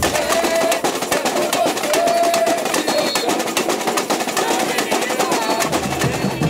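Samba drum section playing a fast, dense rhythm led by snare drums, with little deep bass drum, and voices calling over the drumming.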